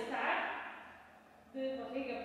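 A woman's voice speaking Portuguese in two short phrases, one at the start and one in the last half second, with a pause between.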